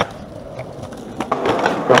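Skateboard wheels rolling on concrete, with a few sharp clacks of the board. The rolling noise grows louder in the second half.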